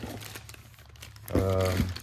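Plastic parts bags crinkling as they are handled and lifted out of a cardboard box, with a man's voice starting to speak about a second and a half in.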